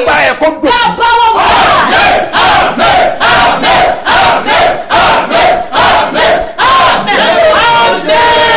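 Loud, fervent shouted prayer from a man and a woman, their voices strained. After the first second it settles into quick repeated outbursts, about three a second.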